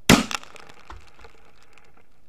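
A .308 rifle shot bursting a water balloon, heard from beside the target: one sharp, very loud crack, a smaller crack right after it, and a dull low thump about a second in, followed by faint scattered ticking.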